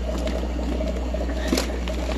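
Knotted plastic fish bag being worked open by hand in a bucket of water: plastic crinkling and small clicks with water sloshing, over a steady low hum.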